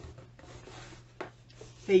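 Cardboard box lid lifted open by hand: a faint rubbing scrape of card on card, with one small tick a little over a second in.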